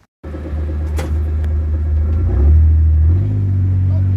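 Motor vehicle engine running with a loud, steady low rumble that starts suddenly just after the start and rises slightly in pitch about three seconds in.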